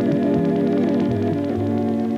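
Background music: sustained organ-like keyboard chords.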